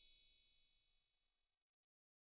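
Faint tail of a chime sting, high metallic ringing tones dying away and gone about a second and a half in.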